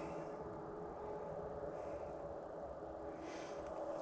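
Quiet outdoor background: a faint, steady hum with no distinct events.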